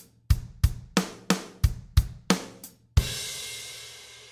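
Drum kit playing a steady eighth-note bass-and-snare pattern, about three strokes a second: bass, bass, snare, snare, bass, bass, snare. About three seconds in it ends on a crash cymbal hit that rings out and slowly fades.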